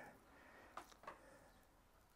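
Near silence while a boning knife slices quietly through venison, with two faint ticks a little under a second in.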